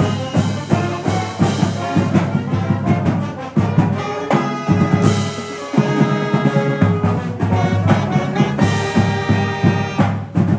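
A college marching band's brass, saxophones and clarinets playing an upbeat tune live, over a steady beat, with a long held chord about halfway through.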